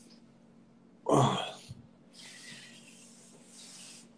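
A man clears his throat once, a short loud rasp about a second in, followed by softer breathing.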